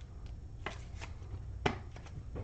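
Clear plastic one-touch card holder being handled and pressed shut around a trading card: a handful of light plastic clicks and taps, the sharpest one near the end.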